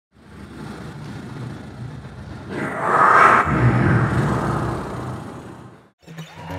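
A rumbling whoosh of noise that swells up from silence, peaks about three seconds in, and fades away again just before the end.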